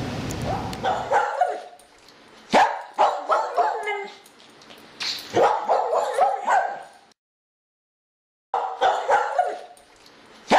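A dog barking and yipping in quick bursts of short calls, with a silent gap of about a second and a half near the end.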